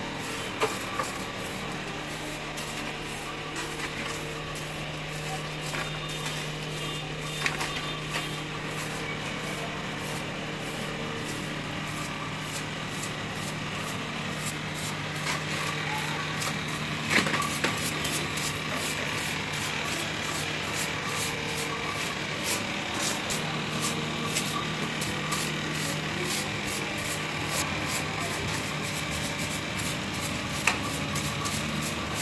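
A broom sweeping a concrete floor in quick, repeated scratchy strokes over a steady low hum, with one sharp tap about seventeen seconds in.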